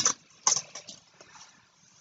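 Two short, soft rustles of Pokémon trading cards being handled, within the first second.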